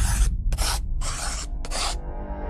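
Four short swishing whooshes about half a second apart, over a steady low rumble: sound effects of an animated logo intro.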